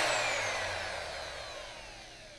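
IKA Ultra-Turrax T25 rotor-stator homogenizer spinning down after being switched off at the end of homogenising the juice: its whine falls steadily in pitch and fades away.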